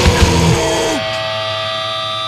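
A hardcore punk band's last chord with drum hits, a low note sliding down about a second in, then the guitars left ringing as steady sustained feedback tones at the end of a song.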